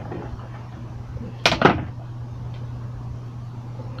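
Handheld ATG adhesive glider gun laying double-sided tape onto a paper strip: a small click, then a short, loud zip about one and a half seconds in.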